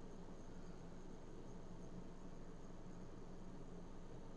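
Faint steady low electrical hum with a light hiss under it: the background tone of the recording, with no other events.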